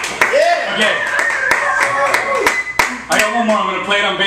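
Scattered clapping from a small audience, with voices calling out over it; a man starts talking about three seconds in.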